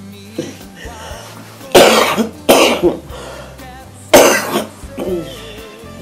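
An elderly woman coughing three times in short, loud bursts, the first two close together and the third a second and a half later, over faint background music.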